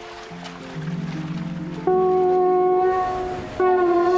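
A spiral horn shell blown like a horn as a call for help: a lower note swells up, then a loud, steady horn blast is held for about two seconds, breaks briefly, and starts again near the end.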